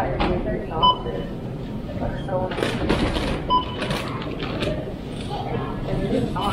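Checkout barcode scanner beeping twice, short high electronic beeps, with plastic grocery bags rustling as groceries are bagged.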